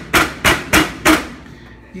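A flat hand slapping a folded tortilla down against an electric stovetop: four sharp smacks in just over a second, about three a second.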